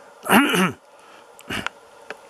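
A man clearing his throat: a short breathy, voiced sound falling in pitch, followed about a second and a half in by one brief cough.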